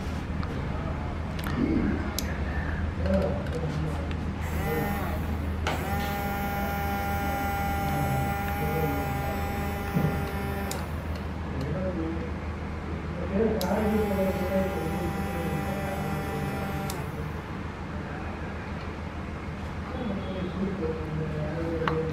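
Small DC mini water pump motor, switched on through a relay, whining steadily in two runs: first for about six seconds, then for about three seconds. A steady low hum lies under it throughout.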